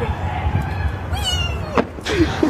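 A girl's short, high-pitched squeal, falling in pitch, about a second in, over a steady low rumble.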